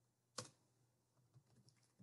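Computer keyboard: one sharp key press a little under half a second in, then a few faint key taps, otherwise near silence.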